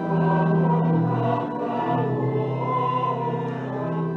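Several voices singing a hymn with pipe-organ-style accompaniment, in long held notes.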